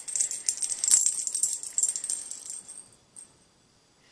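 A small bell-filled cat toy rattling and jingling in quick, dense shakes, dying away and stopping about three seconds in.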